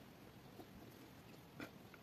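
Near silence: faint scratching of a ballpoint pen writing on notebook paper, with one brief faint click about one and a half seconds in.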